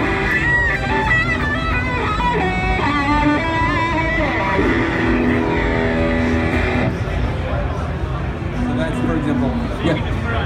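Electric guitar played through a wah-type effect that is swept by hand on a REVPAD touch pad on the guitar body rather than by a pedal. Its notes wobble and bend in pitch, and the playing stops near the end.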